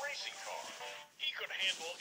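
A voice speaking over background music.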